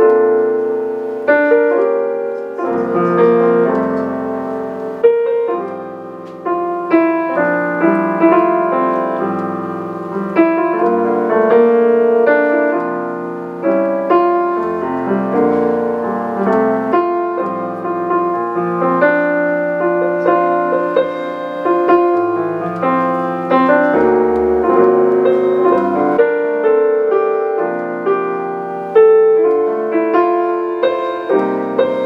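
Piano playing a pop-ballad style chord accompaniment to a worship song, sight-read from a chord chart: sustained chords under a melody line, played without pause.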